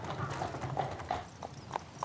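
A horse's hooves clip-clopping on a paved road at a steady pace, about three hoofbeats a second, as it pulls a two-wheeled cart.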